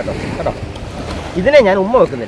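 Wind buffeting the microphone over small sea waves washing onto the beach, an even rushing noise; a man's voice comes in near the end.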